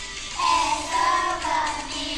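A group of young children singing together over musical accompaniment, their voices coming in about half a second in.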